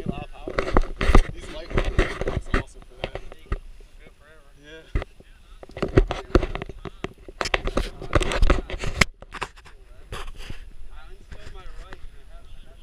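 Repeated crackling, buffeting bursts on an outdoor camera microphone, with faint, unclear voices now and then. The crackle drops away briefly near the three-quarter mark.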